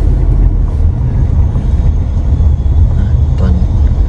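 Steady low rumble of a car driving, heard from inside the cabin: engine and tyre noise.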